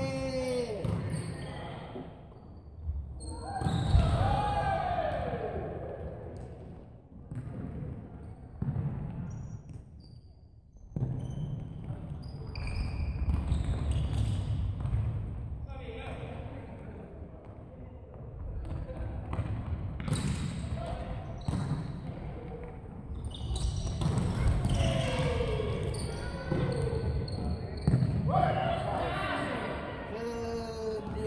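A futsal ball being kicked and bouncing on a wooden sports-hall floor, with players shouting and calling to each other. The sounds echo in a large hall.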